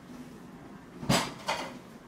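Two short knocks about half a second apart, over quiet room noise.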